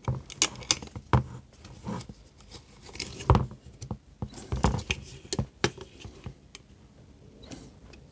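Irregular light metallic clicks and taps of an Allen key and stainless steel bolts and washers against a metal antenna base plate and its plastic clamps, as a bolt is loosened and adjusted by hand. One knock is louder than the rest, about three seconds in.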